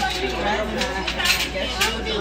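Voices and background chatter in a restaurant dining room, with a few short clinks of tableware about a second in and again near the end.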